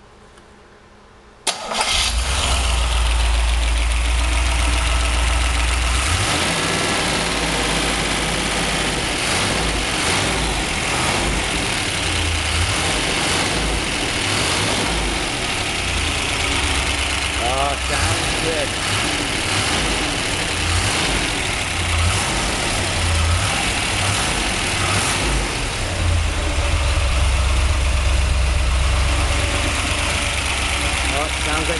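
1963 Corvette 327 small-block V8 catches and fires about a second and a half in, then keeps running unevenly, its speed rising and falling. The owner suspects the rockers may need adjusting.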